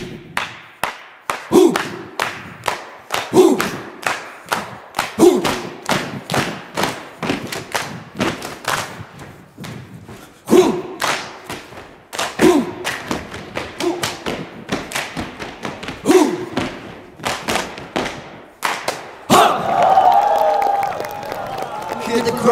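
Percussion break in a stage dance routine: sharp claps and stomps in a quick rhythm, with a deeper drum hit that drops in pitch about every two seconds. Near the end, music comes in.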